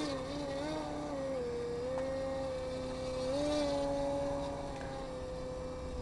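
Radio-controlled aerobatic model plane's motor and propeller buzzing steadily as the plane hangs nose-up in a hover. The pitch steps up a little about halfway through and drops back near the end.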